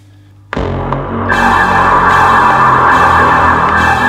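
Rough mix of layered synth samples for a horror-style intro, played back from a DAW: a low, bassy synth under a horror-type layer. It starts abruptly about half a second in, and a brighter, steady layer joins about a second later.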